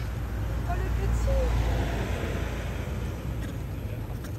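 A motor vehicle passing: a low rumble with tyre hiss that swells to a peak about a second and a half in and then fades. A few short, high squeaky calls sound over it early on.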